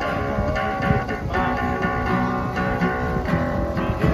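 Live acoustic street band playing an upbeat number: strummed acoustic guitar with accordion and a second guitar holding sustained notes, no singing.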